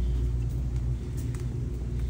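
A steady low rumble with a few faint soft taps.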